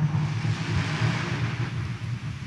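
Steady room tone of a large church: an even rushing hiss with a low hum beneath it.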